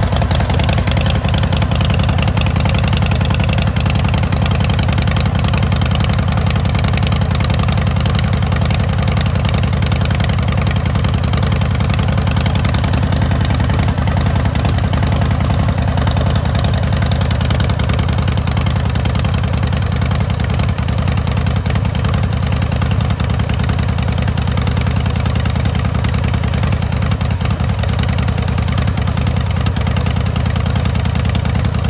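2008 Big Dog K9's fuel-injected 117 cubic inch S&S V-twin idling steadily through its SuperTrapp exhaust, with an even pulse.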